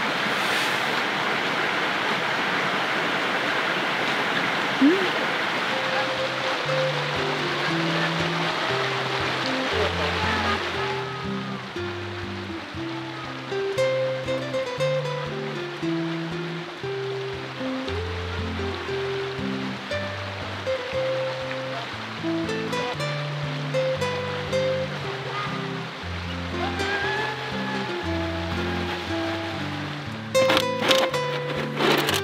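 Steady rushing of a mountain stream, which cuts off about eleven seconds in. Soft background music with a slow melody of low notes comes in about six seconds in and carries on alone after the water stops.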